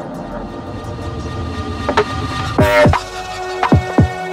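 Electronic music: a low rumbling drone under steady synth tones, with sparse hits and a bright noisy burst with falling-pitch drum strikes about two and a half seconds in.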